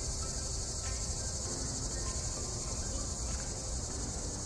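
A steady, high-pitched insect chorus droning without a break, with a low rumble underneath.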